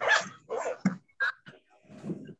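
A dog barking: several short, sharp barks in quick succession.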